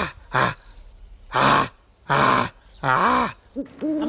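Lion roaring in a run of short grunting calls, four of them, each a loud 'ah' that falls in pitch.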